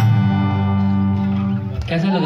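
Live band's guitars and bass holding one sustained final chord after the drums stop, ringing on and dying away near the end.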